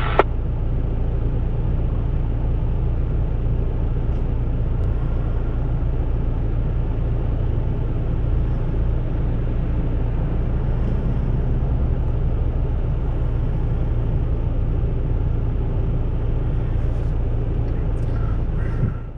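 Vehicle engine idling, heard from inside the stopped cab: a steady, unchanging low rumble.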